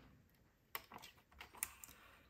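Faint, small plastic clicks and taps, about six in the second half, as a hand needle and fingers work yarn loops off the plastic needles of a circular knitting machine.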